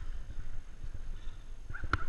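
Gloved hands rummaging through a backpack: faint rustling and handling noise, with a sharp click near the end.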